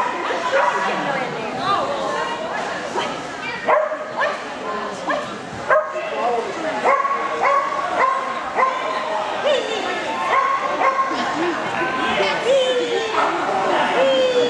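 A dog barking and yipping over and over in quick runs of short calls, with voices in the background.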